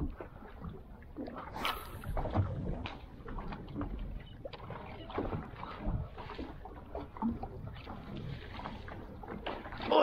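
Water slapping against a kayak hull, with irregular small knocks and clicks as a popper lure is cast and worked back. There is a brief hiss about two seconds in.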